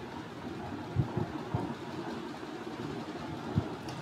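Steady low room noise with a few soft, short low knocks from a stylus writing on a tablet: three in the first half and one near the end.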